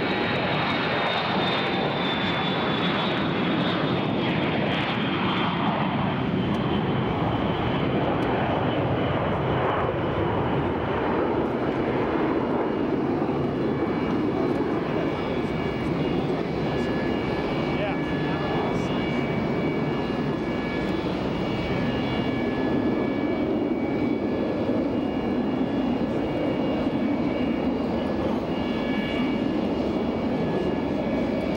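Four-engine VC-137 (Boeing 707) jet on its takeoff roll at full thrust and climbing away, a loud, steady engine roar throughout. A high whine falls in pitch as the jet passes in the first few seconds, and steady high tones sit over the roar later as it climbs away.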